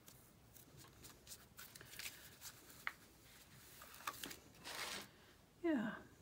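Light rustling and small clicks of clear polymer stamps and their plastic backing sheet being handled, with an acrylic stamp block on paper. Near the end comes a short voice sound that falls in pitch.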